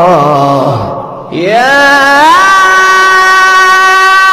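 A solo voice reciting the Quran in melodic tilawat style. It ends an ornamented, wavering phrase, pauses for a breath about a second in, then glides up into a new long note that is held steady.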